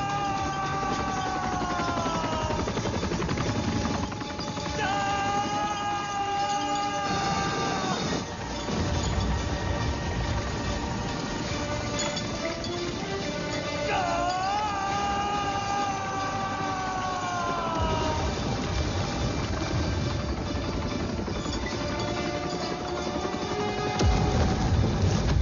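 Film action-scene soundtrack: dramatic background score in which a voice holds three long notes, each sliding down at its end, over a dense, steady low rumble that swells near the end.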